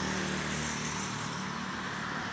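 Street traffic: a vehicle's engine hum over a steady rush of road noise, the hum fading about one and a half seconds in.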